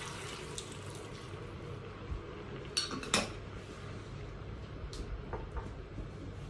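Water poured from a glass bottle into a pot of chopped vegetables, a faint pouring hiss that dies away in the first couple of seconds. About three seconds in come two sharp clinks of glass against metal or pot, then a single click and a few lighter knocks.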